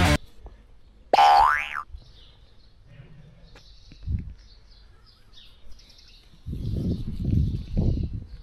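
A springy cartoon 'boing' sound effect about a second in, its pitch rising sharply over under a second. Faint bird chirps follow, and from about six and a half seconds low rumbling noise.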